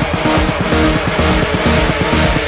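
Dirty Dutch house DJ mix: loud electronic dance music with a steady driving beat.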